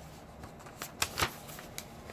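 A folded paper leaflet being handled, rustling with several short, sharp crackles.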